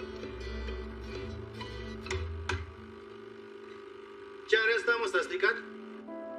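A music cue of plucked-string notes over a low bass for the first two and a half seconds, fading to a quieter held background, then a short burst of a voice about four and a half seconds in.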